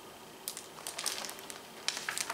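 Page of a hardcover picture book being turned and the book handled: a string of short, faint paper crackles and ticks starting about half a second in.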